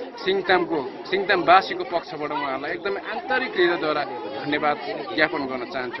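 A man speaking continuously, with crowd chatter behind him.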